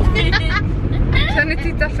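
Low, steady rumble of a car cabin while driving, with children's high voices chattering over it.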